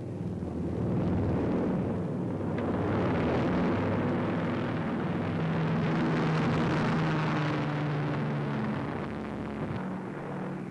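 Twin-engine B-26 Marauder bombers taking off, their Pratt & Whitney R-2800 radial engines running at full power in a steady roar. The roar swells about a second in and eases a little near the end.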